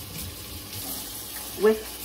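Kitchen tap running steadily into a sink.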